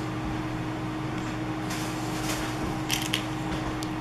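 Steady background hum, with a few faint rustles and light clicks from hands handling paper and small craft buttons in the second half.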